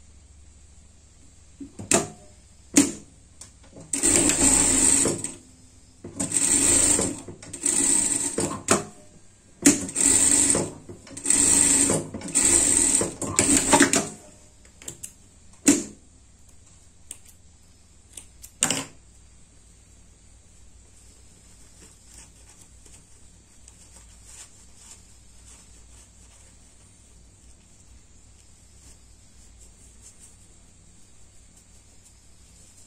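Industrial sewing machine running in short stop-start bursts of about a second each, about seven runs over some ten seconds, as a small fabric piece is stitched. A few sharp clicks come before and after the runs.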